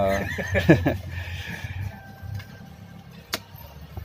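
A man's voice makes a short drawn-out vocal sound that rises and falls in the first second. A low steady hum follows, with a single sharp click a little past three seconds in.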